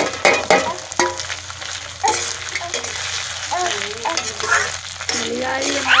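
Broken wheat (daliya) sizzling as it is fried in hot oil with potatoes in an iron kadhai. A metal spatula scrapes and stirs it against the pan.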